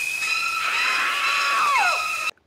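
A woman's long, high-pitched scream from an old horror film, held steady with a second voice sliding downward near the end.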